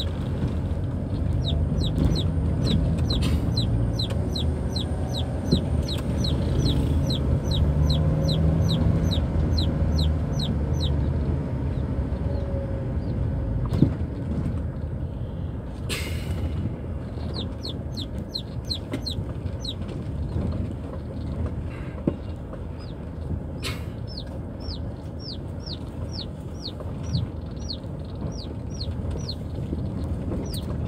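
Chickens inside a moving car calling in a rapid string of short, high, falling chirps, about three a second, pausing briefly in the middle. Under them runs the car's steady engine and road rumble on a rough dirt road, with a few sharp knocks from bumps.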